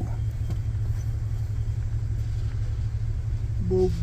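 Minivan engine idling, heard inside the cabin as a steady low rumble while the van sits stopped.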